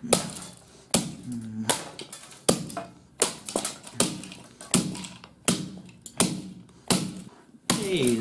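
A hatchet chopping at the plastic and metal pieces of a broken DVD player: about eleven sharp strikes in a steady rhythm, roughly one every three-quarters of a second.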